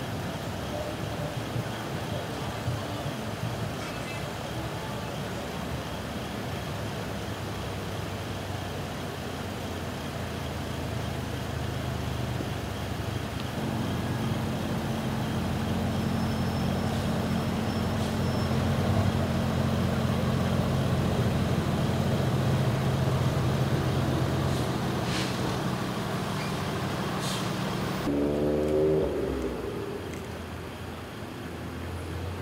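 Idling vehicle engine at a roadside scene. It starts as a low background hum; about halfway through a steady low engine drone comes in, grows louder and holds. A brief voice is heard near the end.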